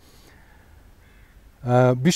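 A short pause in a man's talk, filled with faint outdoor background and one faint, drawn-out bird call lasting about a second. A man's voice starts again near the end.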